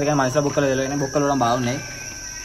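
Crickets chirring in a steady high trill, with a man's voice talking loudly over them until shortly before the end.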